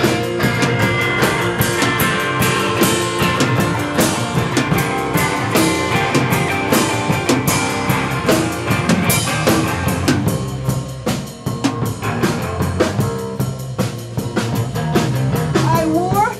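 Live rock band playing loudly: drum kit with regular cymbal and drum strokes under electric guitar. The music thins out briefly about ten seconds in, then builds again.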